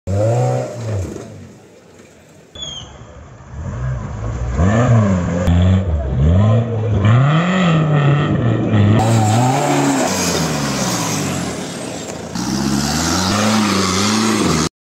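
Mahindra 4x4 jeep engines revving hard under load as they climb steep muddy slopes, the pitch swinging up and down again and again across several short cut clips. The sound is quieter for about a second near the start.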